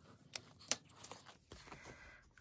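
Faint scratching of a felt-tip marker colouring on a paper card, with two sharp clicks in the first second, then the light rustle of paper banknotes being handled.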